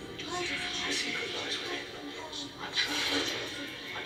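A TV drama's soundtrack playing: background music with faint dialogue over it.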